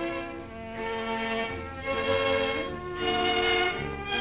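Background film music played by a string ensemble, with violins and cellos bowing slow, held notes that change every second or so.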